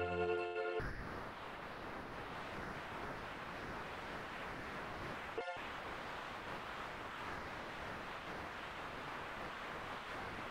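A sustained electronic tone from a Lambdoma harmonic keyboard cuts off suddenly about a second in. A steady hiss follows, broken once by a brief dropout around the middle.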